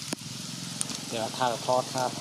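A person's voice starting about a second in, over a steady background hiss, with a short knock at the very start.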